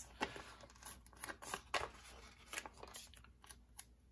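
Paper sticker sheets rustling as they are handled, and a paper sticker peeled off its backing: faint, scattered crackles and small clicks.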